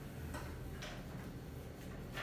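A few faint, unevenly spaced clicks from a computer mouse as the slide is scrolled, over a low steady hum.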